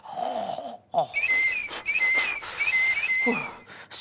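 A man's strained, breathy cry, then a run of about six high, whistling wheezes, each a short rising chirp settling onto a held note, over breathy noise.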